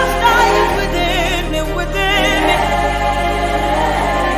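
Gospel worship song with a choir of women's voices singing long held notes with strong vibrato over sustained low bass notes, the bass shifting to a new note twice.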